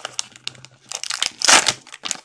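Plastic wrapping of a trading-card pack crinkling and tearing as hands open it. It is a run of quick crackles, loudest about one and a half seconds in.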